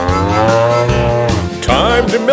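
A cartoon cow's long moo, rising slightly in pitch and lasting about a second and a half, over a children's song backing track with a steady beat.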